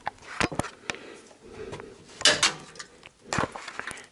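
Steel hand tap in a tap wrench being turned into a drilled-out broken bolt to cut an M12×1.75 thread: a run of small metallic clicks, then louder sharp cracks in the second half as the tap breaks off in the hole.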